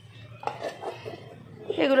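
Plastic lids and bowls knocking and clattering a few times as they are lifted and set back down on a stone countertop.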